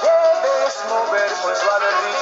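Tropical dance-orchestra music: a male singer and saxophones over the band, opening on a long held note.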